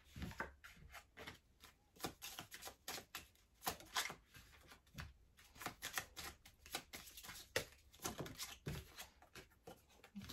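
A small deck of Lenormand cards being shuffled and handled, giving a soft, irregular run of card flicks and taps, several a second.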